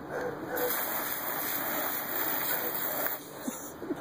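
Garden hose spraying water, a steady splattering hiss that tails off about three seconds in.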